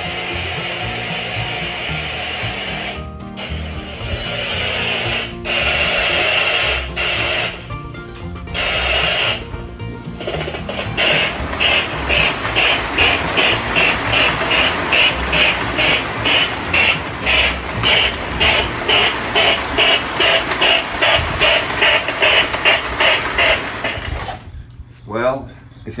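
Lionel MPC-era Hudson steam locomotive's electronic "sound of steam" chuffing as the model train runs on the layout. Irregular at first, then a steady chuff about twice a second, before it cuts off near the end.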